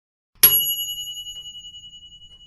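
A bell sound effect struck once about half a second in, its bright ring fading with a slight pulsing over about two seconds: the notification-bell chime of a subscribe-button animation.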